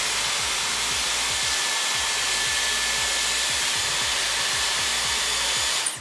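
Dyson Airwrap styler running on its larger curling barrel, its airflow wrapping a section of hair around the barrel: a steady rush of air with a thin high tone, which stops abruptly near the end.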